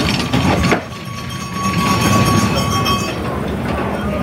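Two-man bobsled running past close by on the ice track, its steel runners giving a rolling, rail-like rumble. The rumble dips just before a second in, then carries on steadily.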